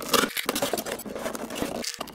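A knife cutting and scraping through cardboard along the box's marked cut-out line, heard as a run of irregular short scratches.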